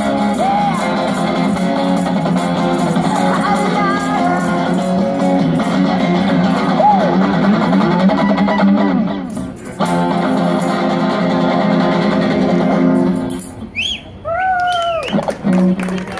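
Electric guitar through a small Roland Cube amplifier playing rock chords, with a short gap about ten seconds in, then stopping at the end of the song about three seconds before the end. A woman's voice through the microphone then sings a couple of long sliding notes.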